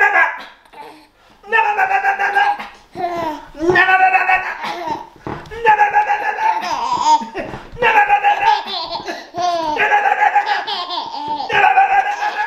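A baby laughing hard: repeated high-pitched belly laughs in about seven bouts, one every second and a half or so, while being playfully poked and tickled.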